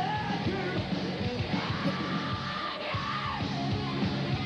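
Heavy metal band playing live: a full band with drums under a high, yelled lead vocal, which holds one long high note through the middle.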